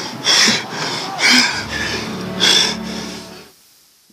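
Film soundtrack: a worn-out boxer's heavy breathing, three loud breaths about a second apart, over a low, steady music score that comes in partway through and fades out shortly before the end.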